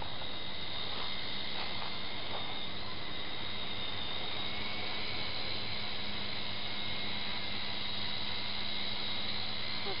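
Syma S301G radio-controlled helicopter's electric motors and rotors whining steadily in flight overhead, the high whine wavering slightly in pitch.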